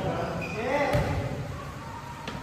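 A volleyball bouncing once on the gym floor about a second in, with a player's voice calling out just before it, echoing in a large hall.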